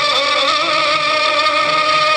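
Loud music playing for a dance, with a long held melodic line that wavers slightly just after the start.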